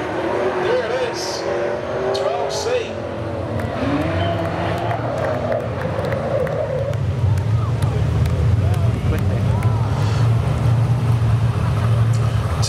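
Speedway saloon car engines racing on a dirt oval, the pitch rising and falling as the cars rev through the corners; from about seven seconds in a deeper, louder engine note takes over as the cars come closer.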